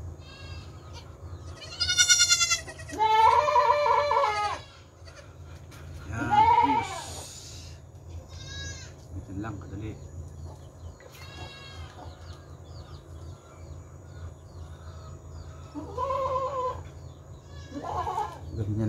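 Three-day-old goat kids bleating as one is held and dosed with syrup: several separate cries, the loudest and longest from about two to seven seconds in, with fainter ones later.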